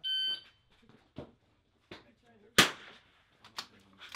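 A competition shot timer gives one short start beep. It is followed by a few light clicks and knocks and one loud, sharp .22 LR rifle shot about two and a half seconds in, with another sharp click near the end.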